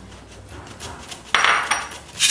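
Hand-squeezed stainless-steel flour sifter working flour through its mesh over a glass bowl: faint at first, then a loud metallic rattle about a second and a half in, lasting about half a second.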